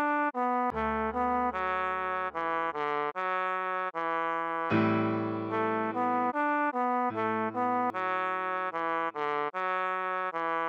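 A trombone plays a slow melody of short, detached notes stepping between a few neighbouring pitches, over held piano chords that fade and change every couple of seconds.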